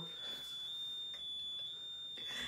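A steady, thin high-pitched whine holds one pitch with small steps, under faint muffled snickers and breaths from stifled laughter.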